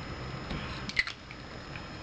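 Quiet room tone with a few brief clicks and rustles about a second in, from a perfume bottle being handled and lowered from the face.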